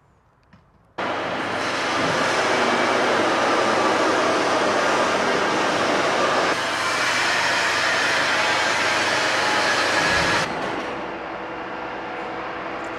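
Steady, loud machinery noise of a metalworking factory floor, starting suddenly about a second in and dropping to a lower level near the end.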